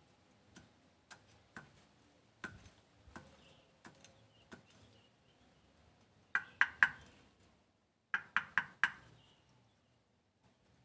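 Sharp knocks with a short metallic ring from handwork on a knife and its wooden handle. A few scattered single taps come first, then a quick run of three strikes and, a second later, a run of four.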